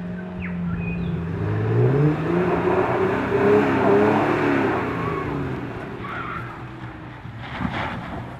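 Toyota FJ Cruiser's 4.0-litre V6 engine revving under load while climbing a dirt off-road track. The pitch climbs about two seconds in and the sound is loudest through the middle, then eases off, with a sharp knock near the end.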